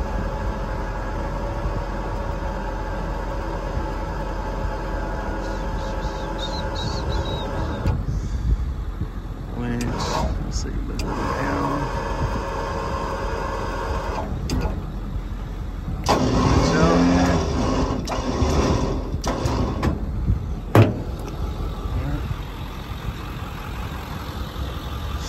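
Venturo crane on a Ford F550 service truck running as its boom is worked: a steady motor-driven hum for the first several seconds, then stopping and starting several times as movements change, with a sharp click late on.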